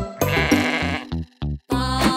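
A cartoon sheep's wavering 'baa' bleat in the first half, over bouncy children's music with a steady beat. The music drops out briefly just before the end.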